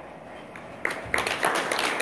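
Audience applause breaking out about a second in, many sharp, irregular hand claps after a low murmur.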